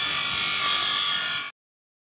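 Bench grinder wheel grinding a steel tool blade: a steady high whine with hiss from metal on the abrasive wheel, cutting off suddenly about one and a half seconds in.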